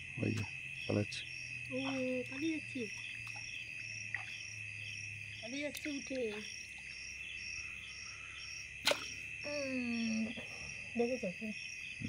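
Night insect chorus: a steady high trill with a regular, faster pulsing chirp above it, with a few short calls or voices breaking in now and then.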